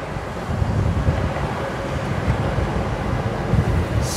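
Steady road noise heard from inside a moving car: a low tyre rumble with wind.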